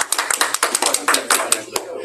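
A small group applauding with quick overlapping claps that die away just before the end.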